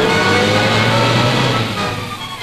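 Orchestral newsreel music score, with one line slowly rising in pitch.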